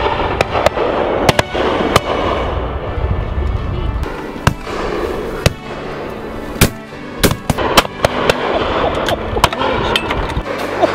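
Shotgun shots from several guns, a dozen or more sharp reports at irregular intervals, some in quick pairs, over background music.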